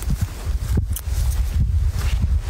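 Strong wind buffeting the phone's microphone as a steady low rumble, with brief rustling of grass about a second in as the walker moves through the pasture.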